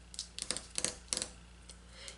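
Fingertips rubbing a paper sticker down onto a planner page: about four short, quick scratchy rubs in the first second or so.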